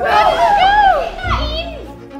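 Several young people shrieking and squealing excitedly in high, swooping voices, with music underneath; the shrieks fade toward the end.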